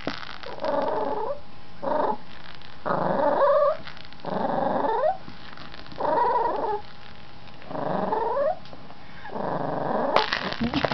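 Yorkshire terrier growling in play, seven drawn-out grumbles in a row, about one every second and a half, some bending up in pitch at the end.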